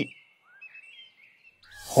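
Faint birds chirping: a few short, high tweets that slide up and down over a second or so.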